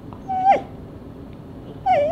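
Bedlington terrier making a short, high whine-like call about half a second in, its pitch falling sharply at the end, as part of its trained 'I love you' talking. A second, longer wavering call begins just before the end.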